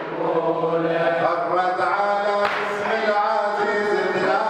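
Men's voices chanting a Muharram latmiya (mourning lament) together in a sustained, drawn-out melody. About two and a half seconds in comes a single sharp slap: a chest strike (latm) keeping time with the chant.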